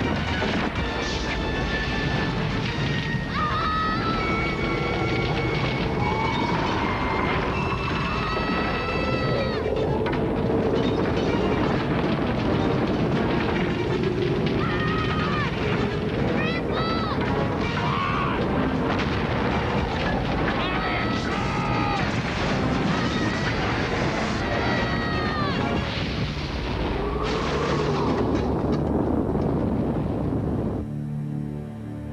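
Disaster-film sound mix: a loud, continuous rumble with booms and crashes, overlaid by dramatic score and high, arching wails that come and go.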